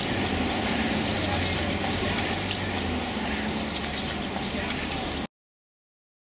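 Outdoor ambience: a steady low rumble and hiss with faint distant voices, stopping abruptly about five seconds in.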